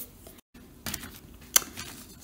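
A few faint clicks and taps of small objects being handled on a tabletop, with the sound cutting out completely for a moment about half a second in.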